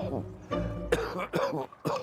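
A man coughing, a few coughs in quick succession in the second half, over background music.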